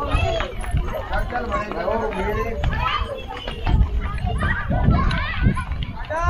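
Several voices of children and adults talking and calling out over one another, some of them high children's voices, with low rumbling on the microphone underneath.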